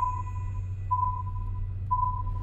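Electronic tracking receiver beeping: a single high beep about once a second, each fading quickly, as it homes in on the satellite's signal. A low steady hum sits underneath.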